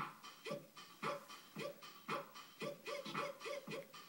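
Portable electronic keyboard playing short notes that each swoop quickly upward in pitch, at about two a second and bunching closer together near the end, over a faint steady higher-pitched layer.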